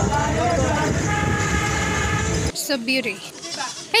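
A goat bleats briefly, a wavering call a little past halfway, after a loud steady rumble with indistinct voices cuts off abruptly.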